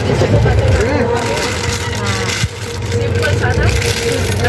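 Steady low rumble of trains running through a station, with people's voices talking over it.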